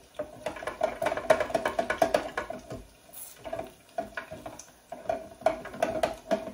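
Metal tongs clicking and knocking irregularly against a deep fryer's metal basket while turning fish balls in the oil, several light strikes a second.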